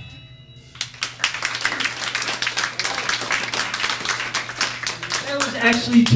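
A small audience clapping for about five seconds after a live punk band's song cuts off, starting after a brief pause, with a steady low hum underneath; a voice comes in near the end.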